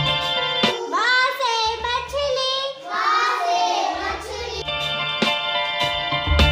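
Hindi alphabet song for children: a child's voice sings two short phrases over a backing track with bass and sustained instrument notes.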